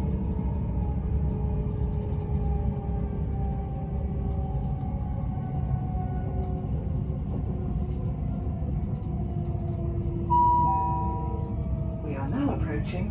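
Cabin sound of a Bombardier Class 387 Electrostar electric multiple unit running at speed: a steady low rumble of wheels on track, with faint electric traction whine tones slowly falling in pitch. Near the end, a short two-note descending chime.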